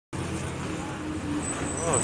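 Heavy diesel truck engine running as a truck-mounted concrete boom pump drives past close by, over steady road traffic noise.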